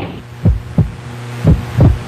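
Heartbeat sound effect: two low double thumps, lub-dub, about a second apart, over a steady low hum.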